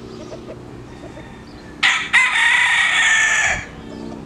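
Cuban gamefowl rooster crowing once: a loud call a little under two seconds in, with a brief catch just after it starts, held for about a second and a half, then falling away.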